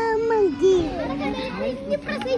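A toddler's high-pitched voice calling out in two short phrases, followed by scattered chatter of voices, over a steady low hum.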